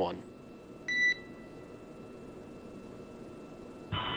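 One short electronic beep about a second in, on the space-to-ground radio loop just after a controller's call to the crew ends, typical of an end-of-transmission tone. After it only a faint steady hiss of the open channel remains.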